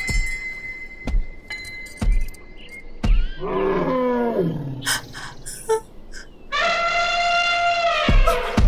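An elephant calling over dramatic music with a drum beat about once a second: a call falling in pitch about halfway through, then a long trumpet blast near the end.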